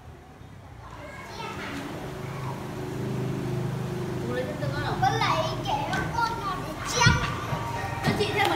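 Young children playing and calling out excitedly over background music, with a sharp thump about seven seconds in.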